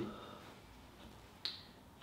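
A pause in a man's talk, with faint room tone and one sharp click about one and a half seconds in.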